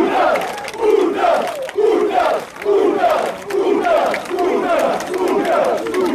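Crowd of football ultras chanting in unison, a shouted phrase of many voices repeated about once a second.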